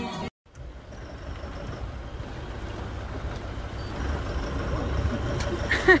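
A boat's motor running with a steady low rumble, growing louder about four seconds in. Voices come in near the end.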